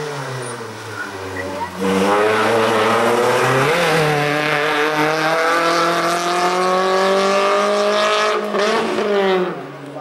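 Slalom race car, a small VW Lupo hatchback, with its engine off the throttle and revs falling. About two seconds in it accelerates hard with rising revs, shifts gear quickly near four seconds, and pulls high revs. Near the end the pitch drops as it goes past.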